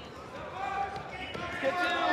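Indistinct voices of people in a large school gymnasium, with a few dull thuds.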